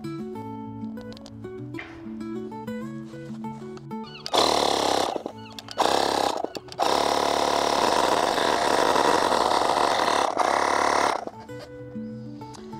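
Ferrex cordless electric inflator running, first in two short bursts and then steadily for about four seconds before stopping near the end, pumping air into a boat fender through a newly fitted valve.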